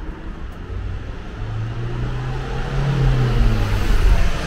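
A motor vehicle approaching along the street. Its engine hum and tyre noise grow steadily louder toward the end.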